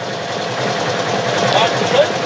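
Steady engine and road noise inside a moving car, heard through a phone's livestream audio, with faint voices in the background.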